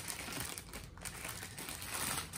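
Clear plastic packing bag crinkling irregularly as it is handled and pulled at to get it open.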